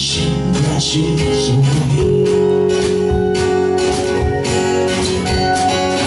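Live band playing a song on acoustic and electric guitars, electric bass and drums, with a chord held from about two seconds in.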